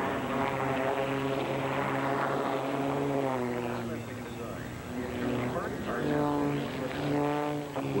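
Aerobatic biplane's piston engine and propeller running hard overhead, the pitch sliding down and up as it manoeuvres. The note drops and fades about halfway, then climbs again twice near the end.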